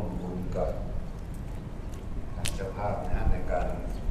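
People talking, over a steady low rumble. A single sharp click sounds about two and a half seconds in.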